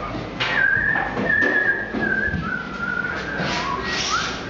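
A person whistling a few held notes that step down in pitch, with a few knocks in the background.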